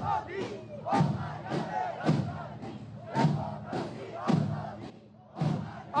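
Rally crowd chanting in unison to marching bass and snare drums, with a drum beat and shouted syllable about twice a second. The beat pauses briefly near the end.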